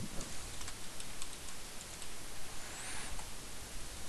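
A few faint computer keyboard and mouse clicks over a steady microphone hiss.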